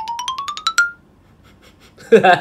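A quick rising run of about a dozen short bell-like notes, climbing steadily in pitch and ending on a brief held note about a second in: an edited-in musical sound effect.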